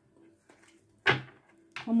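Handling of a tarot card deck during shuffling: faint, with a single sharp knock about a second in.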